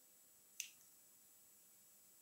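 Near silence: room tone, broken once a little over half a second in by a single short, faint click.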